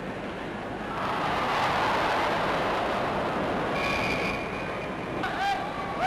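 Ice hockey crowd noise: a steady roar that swells about a second in and eases again. A short high whistle blast comes about four seconds in, and shouts rise from the crowd near the end.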